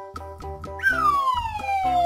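Background music with a cartoon-style falling-whistle sound effect that starts a little before halfway and slides steadily down in pitch for over a second, a comic cue for a puppy tumbling down a ramp.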